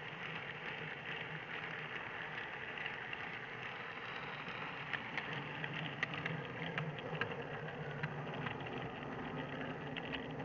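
Model railway train running along the track, heard close up from a camera riding on it: a steady rolling hum with irregular sharp clicks, more frequent from about five seconds in, as the wheels run over the rails.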